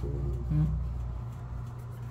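Low, steady rumble of road traffic that eases off slightly over the two seconds, under a woman's brief questioning 'hum?' near the start.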